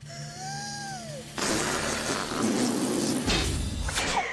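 Cartoon sound effects: a short gliding tone that rises and falls, then a loud rushing whoosh as a wad of gum is flung through the air, with a deep rumble added near the end.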